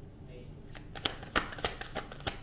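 Tarot deck being shuffled by hand: a quick, irregular run of sharp card clicks and slaps that starts about a second in.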